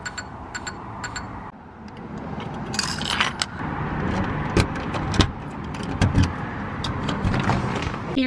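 Keys jangling and sharp metal clicks as a key is worked in a brass doorknob lock and deadbolt to unlock a front door, over a steady background noise.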